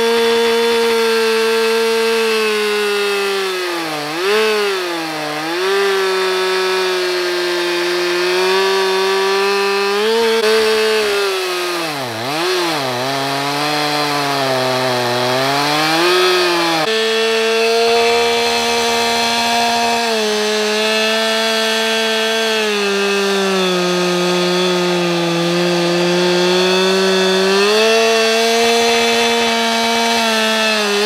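Stihl two-stroke chainsaw running at full throttle, ripping lengthwise through a log on a small chainsaw mill. Its steady note sags and recovers a few seconds in and again through the middle as the engine bogs under load. The chain is dull, which shows in the fine flakes it throws.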